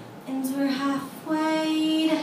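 A woman singing live: after an acoustic guitar chord dies away at the start, she sings two held notes, the second higher and held longer.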